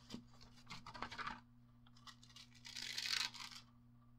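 Deco foil and paper crinkling and rustling as the foil sheet is handled and peeled back from a freshly laminated print. There are a few light clicks and rustles in the first second or so, then a longer peeling rustle about three seconds in.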